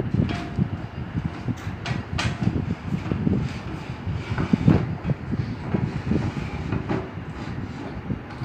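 Handling noise from work on a wooden, glass-sided analytical balance case: an irregular low rumble with a few light knocks and clicks, the loudest about two seconds in and near five seconds.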